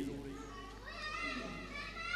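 Faint high-pitched voices in the background, over a low steady hum.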